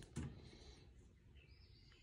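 Near silence, with a few faint, high bird chirps in the background.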